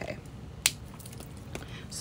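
A single sharp plastic click from a coloring marker being handled, followed by a couple of faint taps.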